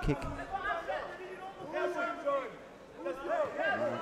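Voices talking over the chatter of a crowd in a large hall.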